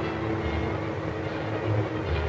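Car engine and road noise running steadily, heard from inside the moving car.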